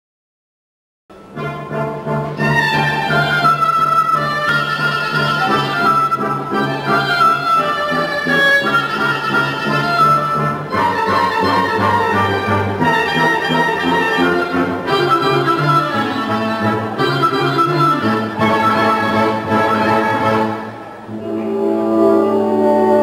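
A reed woodwind plays a solo melody over a band accompaniment with sustained bass notes. It starts suddenly about a second in, after silence, and has a short softer passage near the end.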